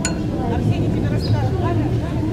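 Voices talking, with a single sharp click at the start, over a steady low rumble.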